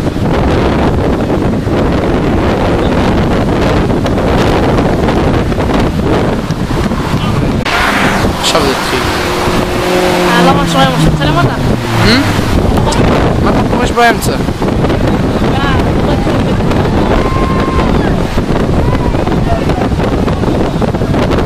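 Wind rumbling steadily and loudly on the microphone, with several voices calling out in the middle, and one sharp knock a little after.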